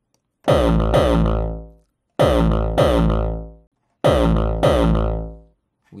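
Hardcore kick drum synthesized in Microtonic, played back through a multiband compressor while its settings are being dialled in. It sounds as three pairs of hits about 1.8 s apart, each hit with a hard attack and a pitched tail that bends downward and dies away within about a second.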